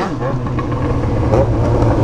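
Yamaha XJ6 motorcycle's inline-four engine running at a steady pitch under way, with wind rushing over the microphone.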